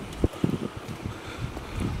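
Wind rushing over a camera's built-in microphone, which has no windshield, with a low rumble and a few faint knocks.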